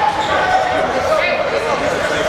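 Indistinct voices of several people talking and calling out at once, echoing in a large indoor sports hall.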